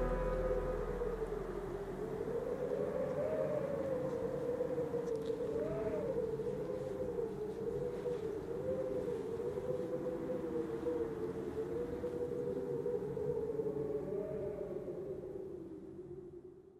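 A single long wavering tone, slowly rising and falling in pitch, closing the soundtrack and fading out at the end.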